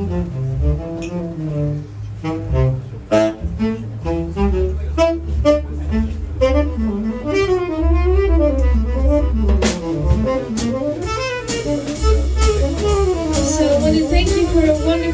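Live jazz combo: a saxophone plays a flowing solo line that rises and falls over bass, keyboard and drums, with cymbal strokes coming more often in the second half.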